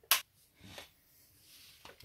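A single sharp click of a wall socket switch being flipped off, cutting power to the coffee machine, followed by faint low-level sound.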